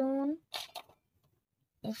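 Speech only: a voice talking in short phrases, with a silent gap of about a second before it starts again.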